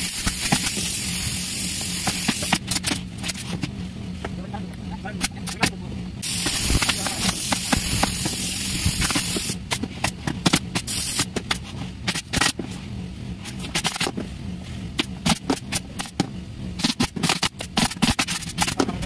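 Pneumatic upholstery staple guns firing in quick sharp clicks as leatherette is stapled onto office chair frames. Two long stretches of loud hissing air, one at the start and one about halfway through, run over a steady low hum.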